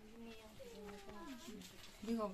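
A faint, drawn-out voice, held on one pitch with a wavering, gliding rise and fall.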